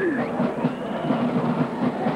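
Marching band drumline playing a quick, steady drum cadence, with crowd voices in a stadium mixed in.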